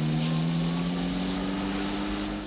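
A steady low droning tone with a few overtones, creeping slightly upward in pitch, with short soft hissing rustles above it.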